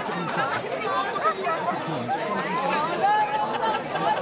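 Crowd chatter: many people talking at once in an outdoor crowd, no single voice standing out.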